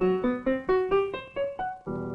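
Piano music: a quick run of about eight single notes, each struck and fading away, climbing in pitch.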